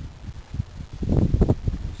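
A hiker's footsteps crunching over rock and brushing through shrubs on a steep, trailless slope: irregular rustling that grows louder from about a second in.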